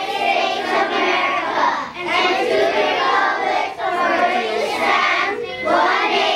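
A group of children reciting the Pledge of Allegiance aloud in unison. Their many voices run together in phrases, with short pauses for breath about every two seconds.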